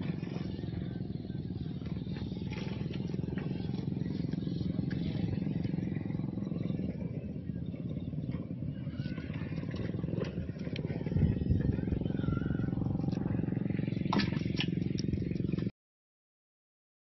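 Road traffic rumbling steadily, with a few sharp clicks near the end before the sound cuts off suddenly.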